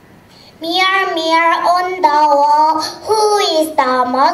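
A young girl singing a short line through a stage microphone, in held notes that slide between pitches, starting about half a second in.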